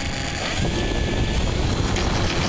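Wind buffeting the microphone of a camera carried on an electric-powered RC airplane, a loud steady rush with heavy low rumble, over a faint whine from the electric motor and propeller, slowly getting louder.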